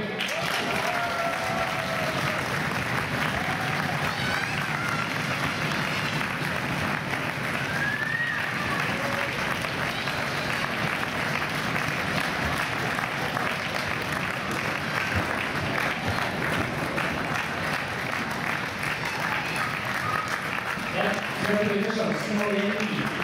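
Audience applauding steadily for a long stretch, with a few voices heard through the clapping.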